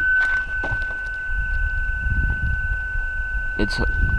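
A steady, high-pitched electronic warning tone from the Subaru Outback, sounding with the driver's door open, over a low rumble and a few faint clicks.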